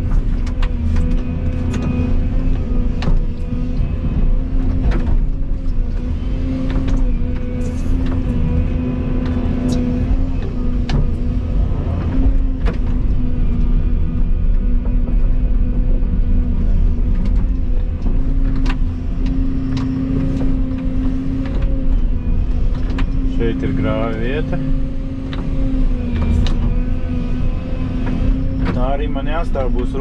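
Volvo EC220E excavator's diesel engine and hydraulics running steadily under load, heard from inside the cab as a loud low hum, with frequent short knocks and clicks as the bucket digs and swings topsoil.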